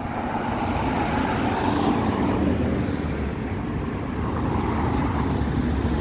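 City street traffic: cars and a van driving past close by, a steady mix of tyre and engine noise.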